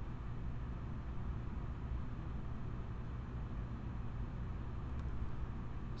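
Room tone: a steady low hum with faint hiss, and one faint click about five seconds in.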